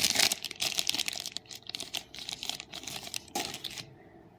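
Thin clear plastic pouch crinkling and crackling as hands pull circuit boards out of it, in fast irregular rustles that stop just before the end.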